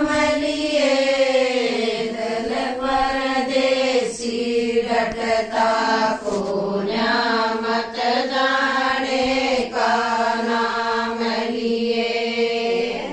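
A group of women singing a traditional song together, unaccompanied, in long held notes with slowly gliding pitch.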